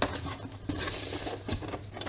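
Cardboard rubbing and scraping as a small cardboard box is slid and lifted out of a cardboard shipping carton, with a light knock about one and a half seconds in.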